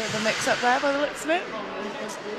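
A voice shouting out loudly for about a second, over the steady noisy hum of an ice rink, with a few faint sharp clicks from sticks and skates on the ice.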